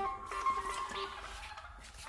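Electronic tones from a homemade touch-pad soundscape box: several held notes layered together, with a new one starting right at the beginning and fading away over about a second and a half.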